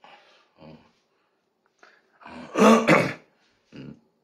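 A man clearing his throat and coughing: a few faint throat noises, then two loud coughs close together about two and a half seconds in, and one short one near the end.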